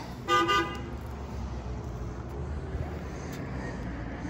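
A brief horn-like toot about half a second in, followed by a low steady rumble.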